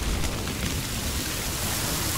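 Steady rain sound effect: a dense, even hiss of falling rain.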